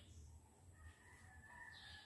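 Near silence: faint room tone with a low hum, and a faint distant bird call held for about a second near the middle.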